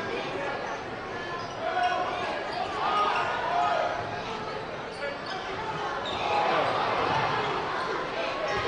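Live basketball game sound in an arena: a ball being dribbled on the hardwood court over the steady noise of the crowd.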